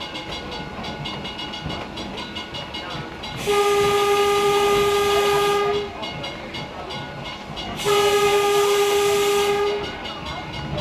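East Troy Electric Railroad car 13's horn sounding two long blasts of about two seconds each, over the steady rumble of the car rolling on the rails, heard from inside the car. The blasts are the opening of a grade-crossing signal as the car nears a road crossing.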